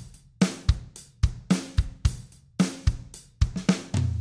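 A virtual drum kit from Logic Pro X's Drummer (the SoCal kit) playing a beat of kick, snare, hi-hat and cymbals, a sharp hit every quarter to half second. This is the dull 'before' version of the drums, without the mixing steps of the series.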